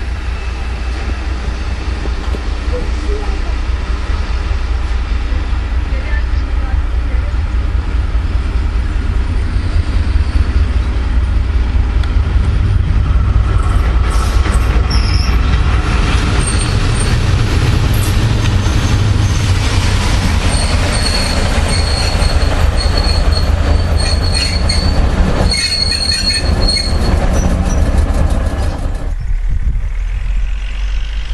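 Vintage red-and-cream railcar running along the track with a steady low rumble from engine and wheels. Through the second half, high thin squeals of wheels on rail come and go.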